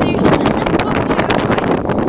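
Loud, rough wind buffeting and rubbing noise on the tablet's microphone, with clothing brushing close against it, and a brief bit of voice at the very start.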